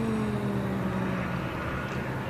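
A motor vehicle engine running outdoors, its pitched note sliding slowly down and fading out in the first second and a half, over a steady low hum and rushing background noise.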